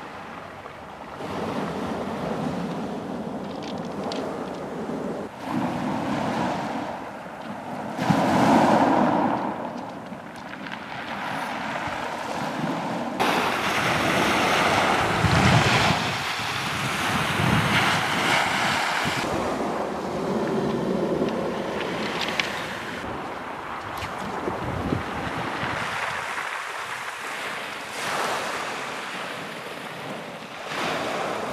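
Small sea waves washing in and out over a pebble beach, swelling and falling in several surges, with wind buffeting the microphone.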